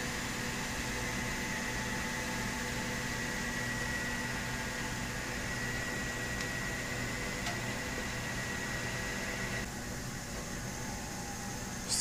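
PIC-controlled three-phase inverter driving an AC induction motor, running steadily: a low hum with a thin high whine that cuts off close to ten seconds in.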